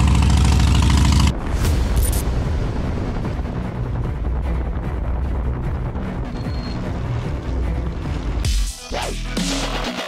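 Harley-Davidson Iron 883's air-cooled V-twin idling loud and lumpy just after a cold start, cut off abruptly about a second in. A quieter, steady noise follows, and electronic music with a logo sting comes in near the end.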